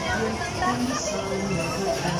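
Carousel ride music playing steadily, with people's voices mixed in around it.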